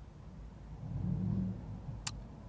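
Low rumble of a car idling, heard from inside the cabin, with a louder low hum for about a second in the middle.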